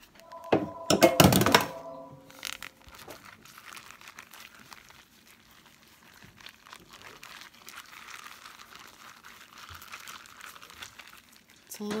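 A short loud clatter with a brief ringing tone in the first two seconds, then a zip-top plastic bag crinkling softly as hands knead the wet flour-and-water paint inside it.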